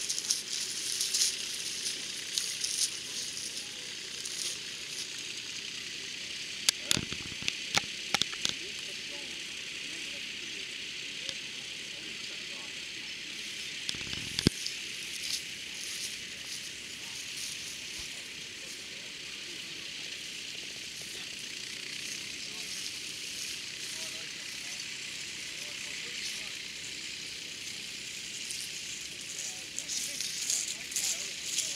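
Indistinct chatter of a crowd of spectators in an open field, with no words standing out. A few sharp clicks come about seven to eight seconds in, and one louder knock about halfway through.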